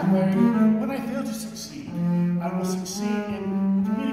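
Double bass played with the bow: a phrase of held notes in its middle register, each lasting from about half a second to a second before moving to the next pitch.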